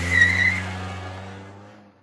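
Car sound effect on a title card: a steady low engine note with a brief tyre squeal just after the start, then the whole sound fades away.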